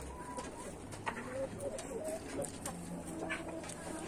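Chickens in a backyard flock making a few soft, short clucking calls, faint and spaced out, with light clicks in between.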